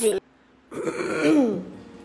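Talking breaks off, and after a half-second gap a person makes one drawn-out vocal sound that slides down in pitch. Faint music starts near the end.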